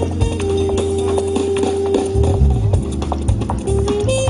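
Live jazz band playing: a bass line under drums with sharp, woody clicking strokes, and a long held note above them lasting about two seconds.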